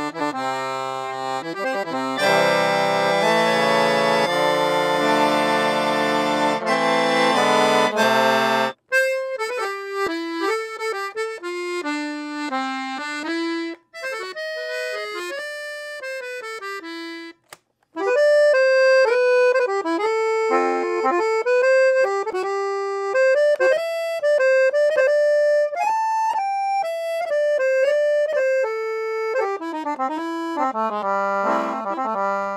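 A handmade 1950s Bell piano accordion, with four sets of Binci reeds (LMMH) and a double tone chamber, being played. For about the first nine seconds it plays a full, thick chordal passage. After a brief break it plays a lighter single-note melody, with two short pauses along the way.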